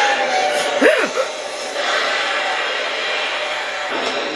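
Horror film soundtrack: a loud, dense wash of sound effects and score, with a shrieking cry that slides up and down in pitch about a second in.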